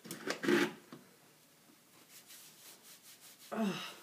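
Soft rubbing and handling sounds of handmade soap being wiped with a paper towel, with a short vocal sound about half a second in and a spoken 'oh' near the end.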